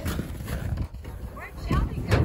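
Dairy cow shifting its hooves inside a metal stock trailer, irregular knocks and clatter on the trailer floor, with a heavier knock near the end. A few short high chirps come in the second half.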